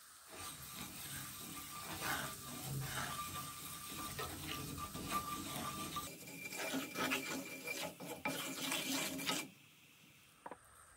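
A wooden spatula stirs and scrapes across a frying pan of curry powder frying in oil, making a continuous rasping rub. It stops just before the end.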